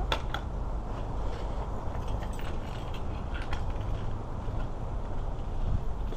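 A small kick scooter being handled and wheeled along: a sharp click at the start, then a few light clicks and rattles over a steady low rumble of movement noise on a body-worn camera.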